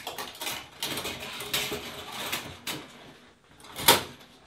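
Metal roller-ball shower curtain hooks clattering and scraping as they slide along a curved stainless steel shower rod, in an irregular run of clicks and rasps, with one loud sharp clack just before the end.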